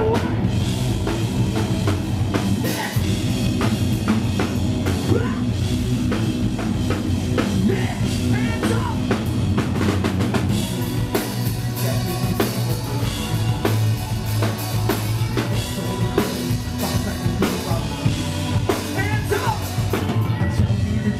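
A live rock band playing loud, with a pounding drum kit, bass guitar and electric guitars, recorded from the crowd.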